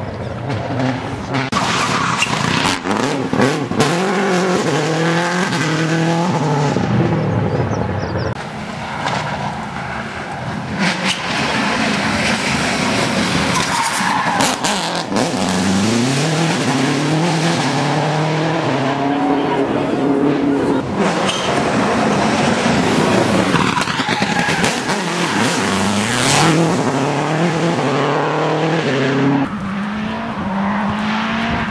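Subaru Impreza WRC rally car's turbocharged flat-four engine at full throttle, its note climbing and dropping back through quick gear changes several times as the car passes.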